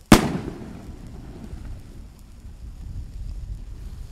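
Zink 910 shell-burst firework rocket (Bombenrakete, 200 g) exploding in the sky with one sharp bang, followed by an echo that rolls away over about a second.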